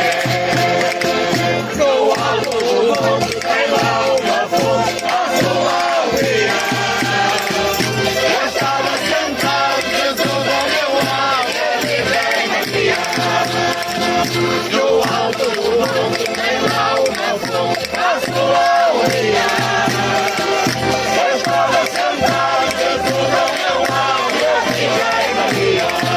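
Folk group of men and women singing together in loud chorus, accompanied by a plucked small guitar, a button accordion and castanets, over a steady low beat about twice a second.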